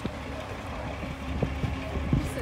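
Wind buffeting the microphone, a steady low rumble, over faint outdoor background noise.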